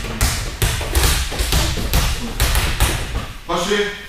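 Several rubber balls being tossed, caught and bounced by a group of children on judo mats: a quick, irregular run of dull thuds and slaps, about three a second.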